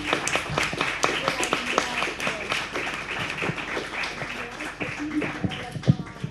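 Audience applauding: a steady patter of many hands clapping that ends abruptly near the end.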